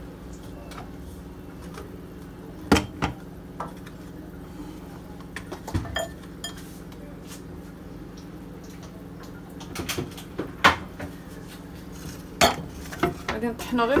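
Kitchen equipment, parts of an electric blender among it, being handled and set down on a granite countertop: scattered knocks and clinks in small clusters over a steady low hum.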